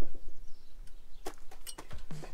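A few short, sharp metallic clinks, about a second in and again near the end, from a wrench and a steel cheater pipe knocking together as they are fitted to break loose a stuck oil drain plug.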